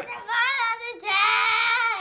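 A young girl singing in a high voice: a wavering note, then a second note held steady for about a second.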